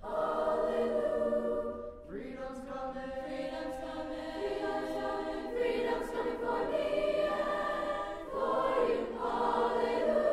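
Middle school choir of young voices singing sustained chords in harmony, with a new phrase coming in about two seconds in and another near the end.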